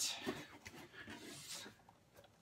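Soft rustling of a cardboard box as its flaps are handled and a plastic-wrapped toy box is pulled out. It begins with a brief hiss and fades toward the end.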